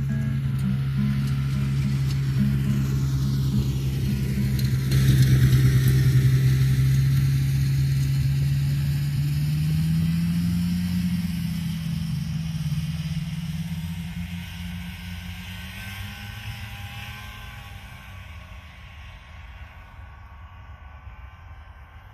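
A motor vehicle driving past, loudest about five seconds in and then fading away over the next fifteen seconds, its engine hum rising slightly in pitch about halfway through.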